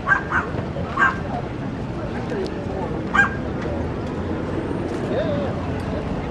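A dog barking: three short, sharp barks in the first second and one more about three seconds in, over the steady murmur of a crowd.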